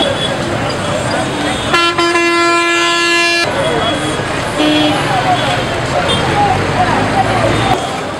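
A vehicle horn gives one long blast of about a second and a half, starting about two seconds in, and a short toot about a second later, over street noise and voices.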